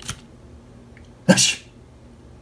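A man's single short, breathy snort of laughter just over a second in.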